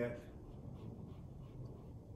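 Shiva Paintstik oil paint stick rubbing in short, faint, scratchy strokes.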